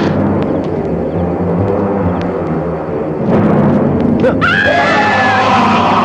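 Film soundtrack: a low droning rumble that swells into a louder rush about three seconds in, topped about a second later by a high wail that slides up in pitch and holds.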